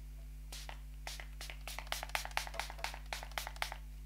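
A makeup setting spray pump bottle misting the face in quick short sprays, about six a second, starting about half a second in.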